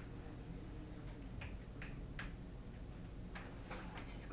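Steady low room hum with about five faint, sharp clicks in the middle and latter part.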